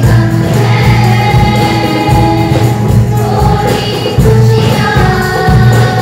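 Mixed choir of school students singing in unison, accompanied by hand drums (congas, bongos and a cajon) keeping a steady beat.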